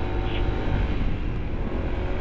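Honda ADV 160 scooter's single-cylinder engine running steadily while riding, under heavy low wind rumble on the camera microphone.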